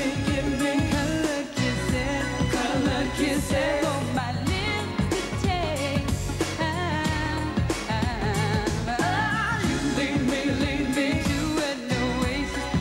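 Live pop band playing with drums and bass guitar while a singer's voice slides and bends through ornamented vocal runs over the beat.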